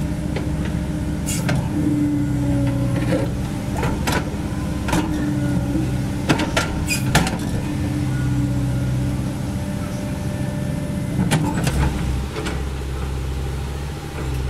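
Caterpillar 307.E2 mini excavator working: its diesel engine runs steadily while a higher whine rises in several stretches as the machine takes load. Sharp clanks are scattered through, a few seconds apart.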